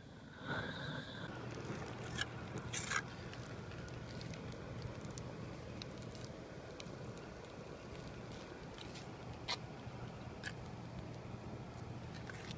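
A roofing torch burning with a steady rushing noise and a low hum as it heats a rubber roofing membrane on a chimney crown. The noise swells about half a second in with a brief whistle. A few sharp clicks and scrapes come through from work on the membrane.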